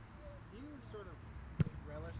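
A single sharp thud of a soccer ball being kicked on the training field, about a second and a half in, over faint distant voices and a low steady rumble.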